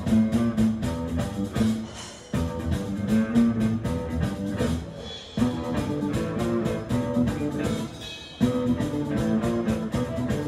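Live rock band playing an instrumental passage on electric guitar, bass and drum kit. The riff repeats about every three seconds, each time falling away and starting again on a hit.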